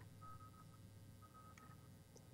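Near silence: room tone with a faint low hum and a faint high tone that comes and goes.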